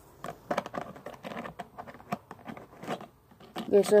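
Irregular clicking and crinkling of plastic toy packaging and figure accessories being handled, with a voice starting just at the end.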